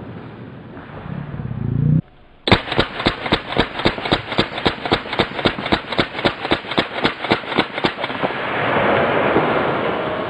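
H&K MP5A3 9mm submachine gun firing a rapid, even string of about thirty shots at roughly six a second, starting a couple of seconds in after a brief drop in the sound. The shots stop about two seconds before the end and a rushing noise swells up after them.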